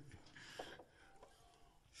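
Near silence: room tone with a couple of faint, brief sounds.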